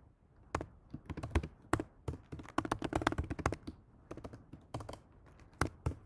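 Typing on a computer keyboard: irregular key clicks in quick runs, entering a short line or two of code.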